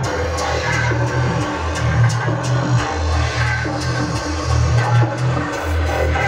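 Loud electronic dance music from a DJ mix, played over a free-party sound system's speaker stacks: a deep bass line that shifts pitch every second or so, under regular hi-hat ticks.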